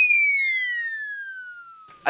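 Comic sound effect: a clean, whistle-like tone that glides slowly down in pitch over about two seconds, fading as it falls, the tail of a quick upward swoop.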